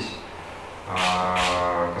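A man's drawn-out hesitation sound, a held "e-e" or hum at one steady pitch lasting about a second, spoken into a handheld microphone mid-sentence.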